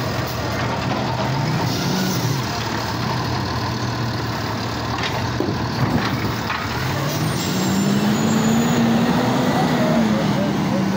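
Side-loader garbage truck's diesel engine running close by, its pitch and loudness rising over the last few seconds as the truck pulls forward.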